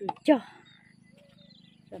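A person's voice repeating a short two-syllable phrase: one syllable at the start, then a pause of about a second and a half with a faint steady low hum, before the chant resumes.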